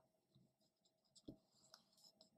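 Faint handling of a small hardback picture book: paper rustles, small clicks and a soft knock a little over a second in as the pages are turned.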